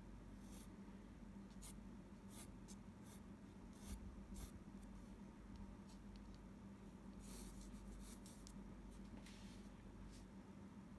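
Graphite pencil scratching faintly across Arches 180 g watercolour paper in short, irregular sketching strokes, one longer stroke about seven seconds in. A low steady hum runs underneath.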